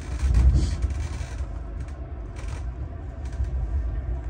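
Passenger train running along the track, heard from inside the carriage: a steady low rumble with scattered rattles and knocks, swelling louder about half a second in.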